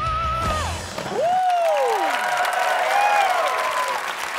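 Rock music ending on a held, wavering note about a second in, then a studio audience applauding and cheering with whoops.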